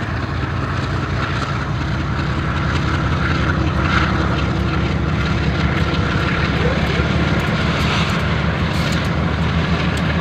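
Lead GE diesel-electric freight locomotives passing close by: a steady, deep engine drone that grows a little louder over the first few seconds.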